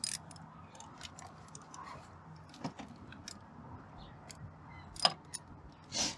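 Irregular small metallic clicks and clinks of a hand ratchet and its socket working a bolt loose by hand, with a louder click about five seconds in.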